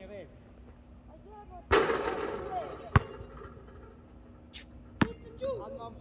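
Basketball being played: a sudden clattering crash about two seconds in that fades over a second, then two sharp basketball bounces about two seconds apart.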